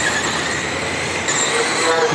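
A pack of 12T Mudboss RC dirt modified cars racing, their brushed 12-turn electric motors and gears making a steady high whine.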